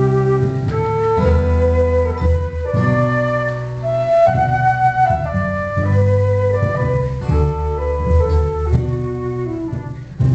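Live Celtic instrumental music: a fiddle and a flute-like wind instrument play a dance tune together over low sustained accompaniment notes.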